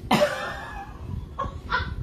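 A rooster crowing and clucking: one loud call with a falling pitch at the start, then short clucks near the end.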